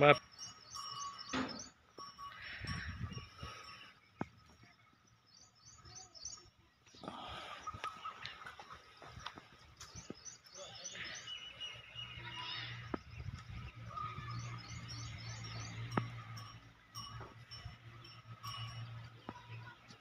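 Small birds chirping in short repeated bursts, over faint background voices. A low steady hum joins about halfway through.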